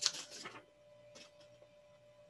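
Paper and a marker being handled on a desk: a short burst of rustling and scraping in the first half second and a smaller rustle about a second in, over a faint steady hum.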